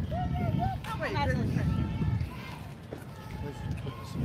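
Speech outdoors: a man says "oh, wait" and other voices follow faintly, over a low rumbling noise on a handheld phone's microphone that is strongest in the first two seconds.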